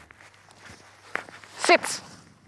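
Footsteps swishing through long grass, then near the end a woman's single short, loud voice command to a dog.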